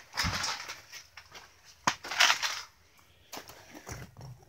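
Irregular rustling and crunching of a pop-up ice fishing shelter's fabric walls and poles being pushed aside, with a sharp click a little under two seconds in.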